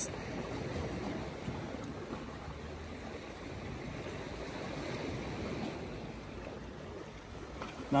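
Sea water washing steadily against shoreline rocks, an even wash that swells a little in the middle.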